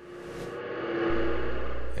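A steady hum with a held tone fades in over about the first second, and a deeper hum joins it about a second in.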